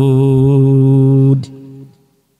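A man's voice holding one long, steady melodic note in chanted Quranic recitation, amplified through microphones. It stops abruptly about a second and a half in, leaving a brief fainter echo.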